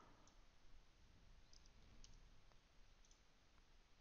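Near silence with a few faint, scattered computer clicks, from a mouse and keyboard entering a trade order.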